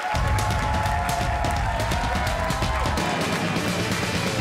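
Up-tempo rock theme music with drums, bass and guitar, starting suddenly at the start: the late-night show's opening theme.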